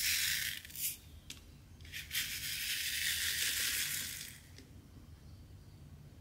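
Round resin diamond-painting drills rattling in a plastic sorting tray as it is handled: a short rattling rustle at the start, then a steadier one about two seconds long.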